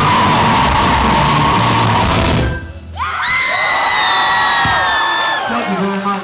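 Live post-hardcore band playing loudly, the song stopping abruptly about two and a half seconds in. Audience whooping and yelling follows.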